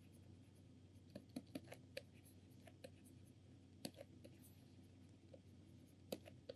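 Faint taps and scratches of a stylus writing on a pen tablet, with a cluster of light clicks about a second in and another near four seconds, over near-silent room tone.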